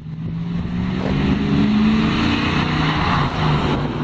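Ford SN95 Mustang GT's V8 running as the car drives along the street. The engine sound fades in at the start and then holds steady, with a slight dip near the end.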